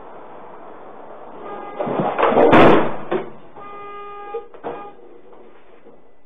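Police van rear compartment on its onboard surveillance audio. Road and cabin noise builds as the van brakes abruptly, then a loud crash about two and a half seconds in as the detainee is thrown into the compartment wall. About a second later comes a steady held tone.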